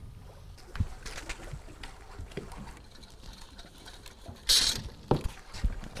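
Water lapping against the hull of a small fishing boat drifting at sea, with a short loud hiss about four and a half seconds in and a few knocks just after it.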